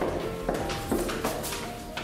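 Background music, with a few sharp clicking footsteps of shoes on a tiled floor, roughly two or three a second.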